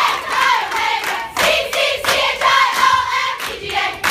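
A large group of young women singing a sorority song loudly together, with hands clapping along.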